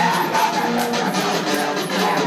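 Music with guitar, playing steadily.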